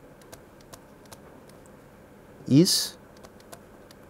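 Faint, light clicks of a stylus tapping on a writing tablet as words are handwritten, about two or three a second. A single spoken word about two and a half seconds in is the loudest sound.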